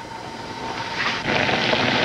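Contents of a cast-iron pot on a gas stove bubbling and sizzling. It builds up in loudness over the first second or so, then holds steady.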